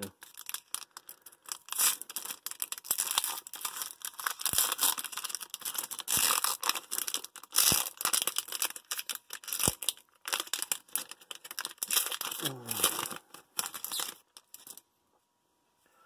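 A foil trading-card pack wrapper from 2003 Donruss Diamond Kings being torn open by hand, in repeated rips and crinkling. The wrapper noise stops about a second before the end.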